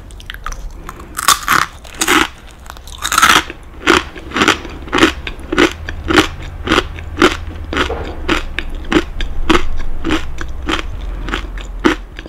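Close-up crunching of a kakinotane rice cracker being bitten and chewed. A few loud crunching bites come in the first three seconds or so, then steady chewing crunches a little under twice a second.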